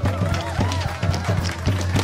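Tap dancing: tap shoes striking a stage floor in quick, irregular clicks over loud instrumental music.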